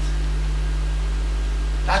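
Steady low hum with an even hiss, unchanging throughout, and a man's voice beginning a word right at the end.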